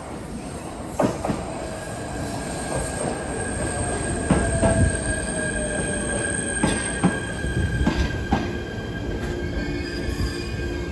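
JR East E129 series electric train pulling in along a platform and slowing. Its wheels knock over the rail joints several times, a steady high squeal sets in about a second and a half in, and a fainter whine falls in pitch as the train loses speed.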